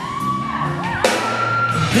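Live band playing a groovy Christmas song in a large hall, with two long high whoops over it. The second whoop is higher and comes in sharply about a second in.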